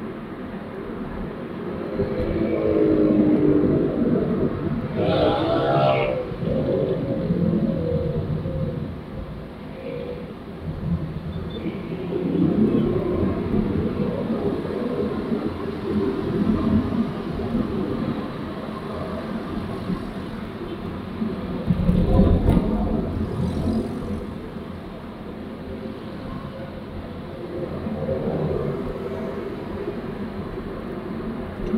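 Road and engine rumble heard from inside a moving car in traffic, with motorcycles passing close by. A nearby engine revs up, rising in pitch, about five seconds in, and a heavy low thump comes about two-thirds of the way through.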